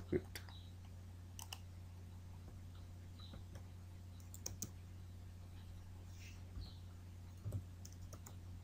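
A few faint, sparse clicks of a computer mouse and keyboard, including a quick pair about halfway through, over a steady low hum.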